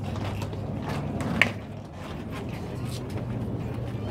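A pitched baseball smacking into the catcher's mitt: one sharp pop about a second and a half in, over a steady low hum.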